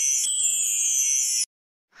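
A high-pitched electronic chime sound effect: two held tones that slide slowly downward, then cut off suddenly about a second and a half in.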